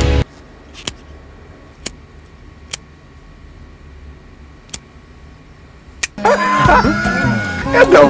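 A few sharp, separate clicks, about a second apart, from a Zippo-style metal lighter being handled with its lid open. About six seconds in, a much louder cut-in film clip with a man's speech and music takes over.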